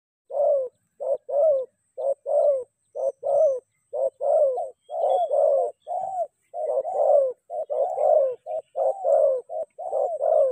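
Spotted dove cooing: a steady run of low, arched coos, a short note followed by a longer one about once a second, the phrases running closer together from about halfway in.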